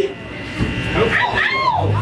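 A person talking on a live-music stage, words not made out, with the room's echo. A low steady hum comes in near the end.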